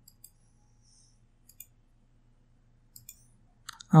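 Computer mouse buttons clicking: a few single, sharp clicks spaced about a second apart over a faint steady low hum.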